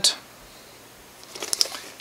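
Short, faint crinkling of the plastic shrink-wrap on a sealed Blu-ray steelbook as it is turned over in the hands, a cluster of small crackles about a second and a half in.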